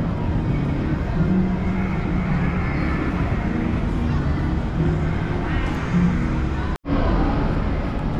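Busy plaza ambience: a steady low rumble under a hubbub of people's voices and faint music, broken by a split-second drop to silence about seven seconds in.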